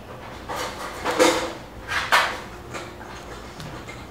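A soft blanket being handled and unwrapped: several short rustling swishes, the loudest about a second and two seconds in.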